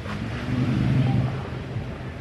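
Outdoor background noise: a low, steady rumble with wind on the microphone.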